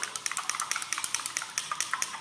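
A glass stirring rod beating fast against the inside of a glass beaker, a quick, even run of light clinks about nine or ten a second. It is whisking mashed onion with detergent and salt solution to break the plant cell walls.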